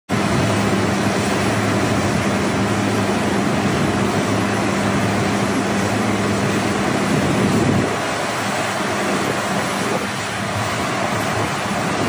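Steady jet aircraft noise on an airport apron: a broad rushing roar with a low hum under it. The hum drops away about eight seconds in.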